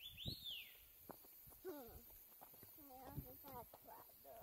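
Faint, brief human voices, with a single rising-and-falling bird chirp right at the start and a few soft knocks.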